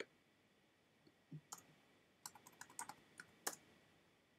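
Faint computer keyboard typing: one keystroke at the start, then a quick run of keystrokes through the middle and a sharper keystroke near the end, as a text field is edited.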